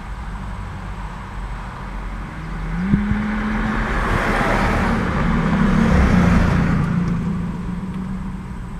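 A car driving past close by over the level crossing, its engine note rising and its tyre noise swelling to a peak about six seconds in, then fading. A short click sounds about three seconds in.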